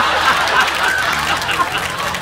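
Two people laughing hard and snickering, partly stifled, over a steady low car-engine hum from the TV soundtrack.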